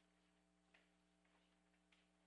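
Near silence: room tone with a steady faint hum and a few faint, short clicks.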